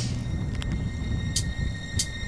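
Steady low rumble from a moving camera rolling over asphalt, mixed with wind on its microphone, under a faint steady high whine.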